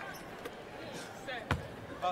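A basketball bounced once on a hardwood court about one and a half seconds in, over a low arena murmur with faint voices.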